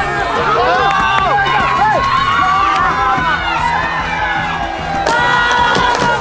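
A crowd of spectators cheering and shouting, many high voices sliding up and down at once, with some clapping.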